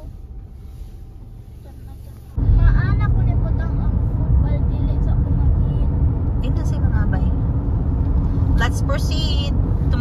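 Car interior noise: a low engine and road rumble heard from inside the cabin. It is quieter at first, then becomes suddenly much louder and steady a little over two seconds in, as the car drives along the road. Voices talk faintly over it.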